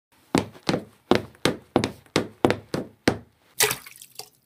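Sound-effect footsteps of someone running, about nine heavy steps at roughly three a second, followed near the end by a short rushing splash.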